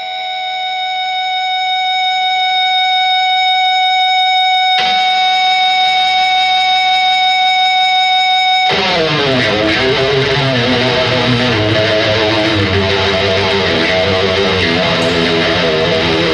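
A single sustained electric guitar tone swells in and holds steady, then about halfway through the full band comes in at once: electric guitars, bass and drums playing a loud, dense riff.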